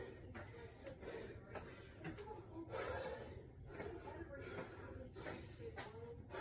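A man breathing hard and gasping for air right after a set of jumping lunges, faint against the room.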